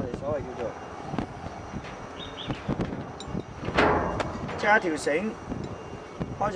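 A man's voice speaking in short snatches, with a brief noisy rustle about four seconds in, over a steady low rumble of wind on the microphone.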